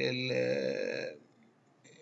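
A man's voice holding one long, level hesitation vowel, a drawn-out "eeh", that stops about a second in.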